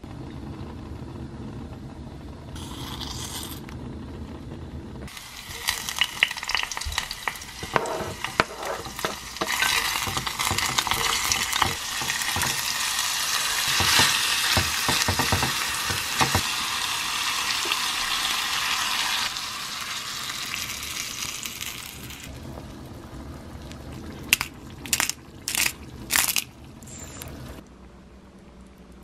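Food sizzling in oil in a clay pot on a gas stove, loudest for about a quarter of a minute after the first few seconds, with wooden chopsticks stirring noodles in the pot. A few sharp clinks near the end.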